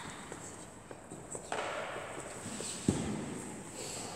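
Children moving about on a sports-hall floor: soft footsteps and scuffs, with one sharp knock about three seconds in.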